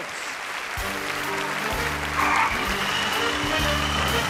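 Audience applauding, with walk-on music of held chords starting about a second in and playing under the applause.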